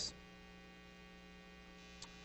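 Faint, steady electrical mains hum with a row of even overtones, otherwise near silence.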